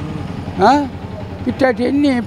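A man speaking Telugu in short phrases over a steady low engine hum from a motor vehicle running nearby.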